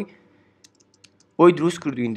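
A few faint, quick computer-keyboard key taps in a short lull, followed by speech resuming.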